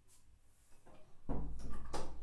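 Handling noise close to the microphone: a dull bump and rustling for about the second half, ending in a sharp click.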